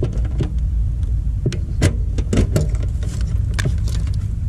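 Scattered small metallic clicks and taps as a screwdriver works at an air-conditioner contactor and its wire terminals, over a steady low rumble.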